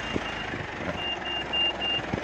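Rapid high-pitched electronic beeping at one pitch, about four beeps a second, from the Mitsubishi Pajero Sport's parking sensor warning. The beeping breaks off briefly and resumes about a second in. Under it runs the low, steady idle of the car's turbodiesel engine.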